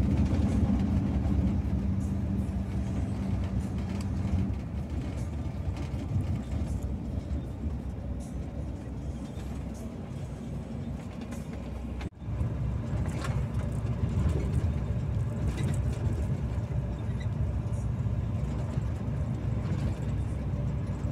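Steady drone of a truck's engine and road noise heard inside the cab while cruising on the highway. There is a brief, sudden dropout about halfway through.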